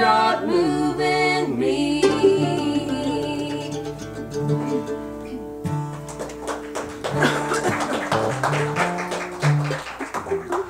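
A small acoustic gospel band closing out a song: voices singing briefly at the start, then acoustic guitar and mandolin picking over low bass notes, the music gradually getting quieter toward the end.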